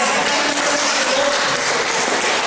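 Congregation applauding, a loud, steady clapping with some voices calling out over it.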